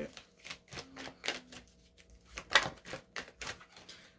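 A deck of tarot cards being shuffled by hand: a quick, irregular run of light card clicks and slaps, the loudest about two and a half seconds in.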